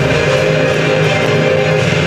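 Music playing at a steady, full level, with no speech over it.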